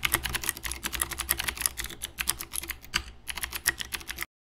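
Fast, continuous typing on a mechanical keyboard: a dense run of sharp key clicks and clacks, with a brief pause a little after three seconds.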